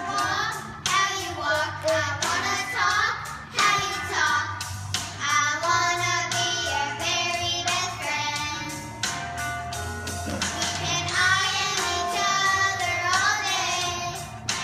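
Several young girls singing a song together.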